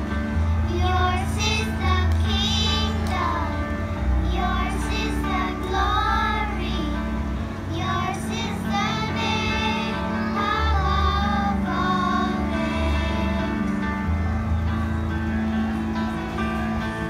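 A group of young children singing a song together into microphones over an instrumental accompaniment with a steady bass.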